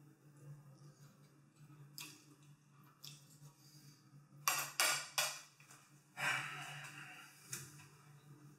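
Metal forks set down on a ceramic plate: a few sharp clinks about halfway through. Then a longer scraping rustle as the plastic frozen-dinner tray is picked up off the granite counter, over a steady low hum.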